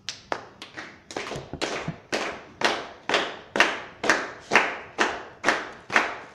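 Audience clapping a steady beat in unison. It is ragged at first and settles within about a second and a half into about two claps a second.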